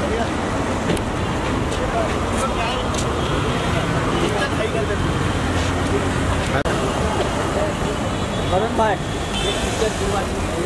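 Steady street traffic noise with a car engine running close by, and scattered shouts and voices from a crowd.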